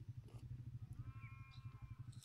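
A small engine idling with a rapid, even low thudding. A high, slightly falling call is heard from about halfway through.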